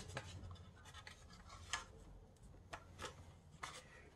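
Faint rubbing and scratching of a lacing strip being drawn through slots in a thin bentwood box wall. There is a sharp tick at the very start, then a few light ticks and short scrapes.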